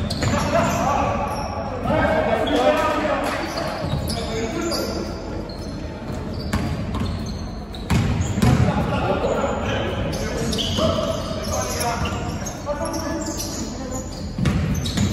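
Basketball game in a large sports hall: the ball bouncing on the hardwood court amid players' shouts, with short high sneaker squeaks.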